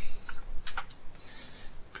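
Computer keyboard keys being pressed, a quick cluster of clicks at the start and a few more later, as text is copied and typed into a web form.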